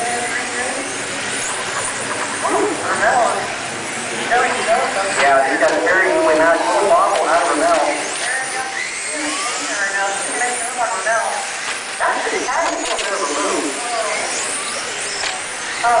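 Several electric 1/10 RC touring cars with 17.5-turn brushless motors racing together, their motors and drivetrains whining. The pitch rises and falls as they accelerate and brake around the track, loudest about five to seven seconds in.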